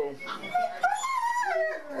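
A dog whining: one long high call that rises and then falls away.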